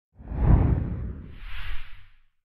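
Whoosh sound effect: a deep rushing sweep that peaks about half a second in, followed by a second, higher swish near the end.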